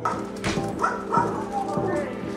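Dogs barking, about three short barks in quick succession, over steady background music.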